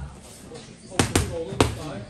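Gloved punches smacking against a coach's focus mitts and belly pad: three sharp hits in quick succession about a second in.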